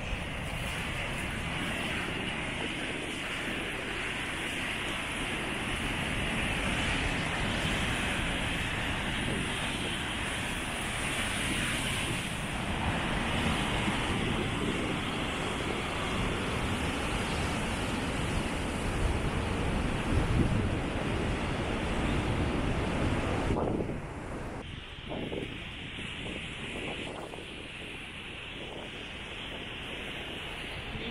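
Ocean surf breaking and washing over rocks below a cliff, a steady rushing roar with wind on the microphone. The sound drops to a lower level about three-quarters of the way through.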